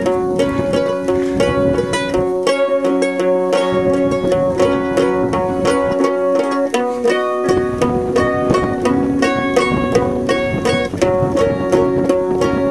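Background music: a quick, steadily picked plucked-string tune over sustained held notes.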